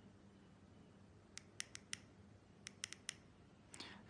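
Small plastic push-buttons on an e-bike display's handlebar remote clicking as they are pressed: a quick run of four clicks about midway, four more a second later and one near the end, over near silence.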